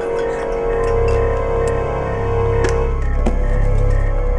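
Suspense film score: a held mid-pitched tone that stops about three seconds in, over a deep low drone that swells in about a second in, with a few faint clicks.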